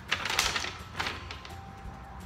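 A folded paper letter being opened out by hand: crinkling rustles in the first half-second and again about a second in, over faint background music.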